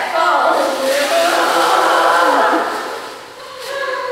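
Several voices shouting a cheer chant together, loud for the first two and a half seconds, then fading before picking up again near the end.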